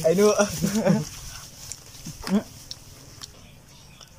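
Mainly a man's voice: a sing-song line in the first second, then a short vocal sound about two seconds in, then quiet background.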